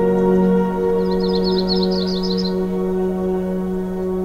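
Ambient background music of steady, sustained tones. About a second in, a bird gives a short, high trill of rapid repeated notes lasting about a second and a half.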